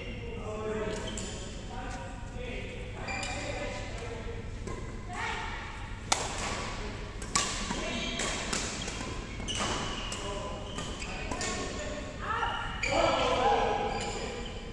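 Badminton rackets striking a shuttlecock in a rally, sharp cracks about a second or so apart, in a large gym hall with voices over it; a louder burst of voice near the end.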